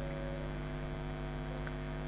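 Steady electrical mains hum: a low, unchanging buzz with a stack of fixed tones above it.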